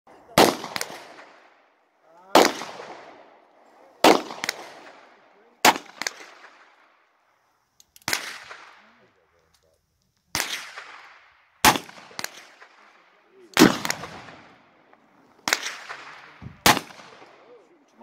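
Revolver fired in slow, deliberate single shots, about ten in all, one every second and a half to two seconds. Each shot has a short ringing tail and a fainter second crack just after it.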